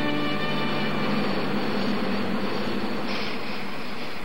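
A held musical chord fades out in the first moment. A steady rushing, machine-like noise follows, and a higher hiss joins it about three seconds in.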